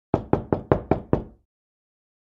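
Six quick knocks on a door, about five a second, each dying away briefly, stopping after about a second and a half.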